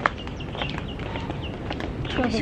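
Footsteps of people walking on a paved lane, with a sharp click at the very start and a few faint, short high chirps in the background.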